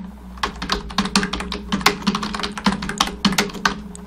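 Typing on a computer keyboard: quick, uneven keystrokes, about five a second, over a steady low hum.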